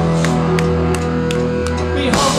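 Live post-punk rock band playing: electric guitar and bass holding steady notes, with sharp drum and cymbal hits over them.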